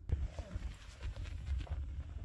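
Low thuds roughly twice a second with rustling handling noise: a handheld phone camera carried by someone walking across a small room.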